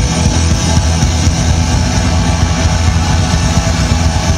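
Punk rock band playing live: electric guitars, bass and drum kit, loud and continuous.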